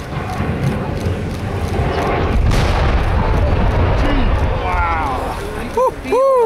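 A 1001-foot power-plant chimney crashing to the ground: a deep, drawn-out rumble with one sharp crack about two and a half seconds in, fading near the end.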